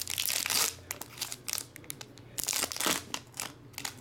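Foil wrapper of a Panini Chronicles football card pack crinkling as it is pulled open and handled: a dense rustle of crinkling at the start, then scattered crinkles and crackles, with a stronger bunch near the end.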